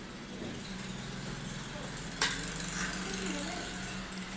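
A motor running steadily with a low hum, and a sharp click about two seconds in, after which a hiss stays louder.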